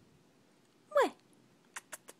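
A cat's single short mew, falling sharply in pitch, about a second in. A few faint clicks follow near the end.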